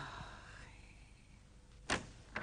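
A brief ringing tone fades out within the first second, then a single sharp knock on a wooden door near the end.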